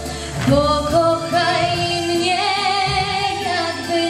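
Young female singer singing a slow ballad live into a handheld microphone over musical accompaniment, gliding up into long held notes with vibrato.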